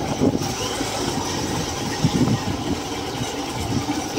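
Hero Hunk motorcycle's single-cylinder engine running steadily as the bike is ridden slowly.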